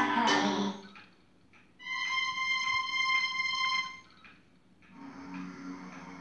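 Short snatches of recorded music from a Marantz CD65 II CD player (TDA1541A DAC) playing through loudspeakers, each cut off as the next track is selected: a chord that stops just under a second in, a steady high note held for about two seconds, then lower notes starting near the end.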